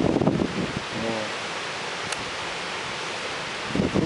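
Steady rushing ambient noise, even throughout with no distinct events, with brief low voices near the start and about a second in.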